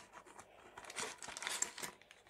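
Faint rustling and crinkling of packaging, starting about a second in, as a small cardboard box is opened and a plastic-bagged bundle of cables is handled.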